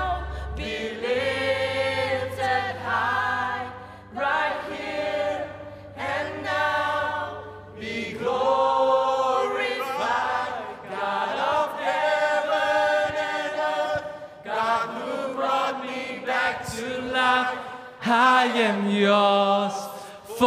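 Male worship leaders and a congregation singing a slow worship song, with the band dropped back so the voices carry it almost unaccompanied. A low held note sits under the singing for the first several seconds and then fades out.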